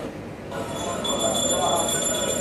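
A steady high-pitched ringing tone made of several pitches, starting about half a second in, over people's voices.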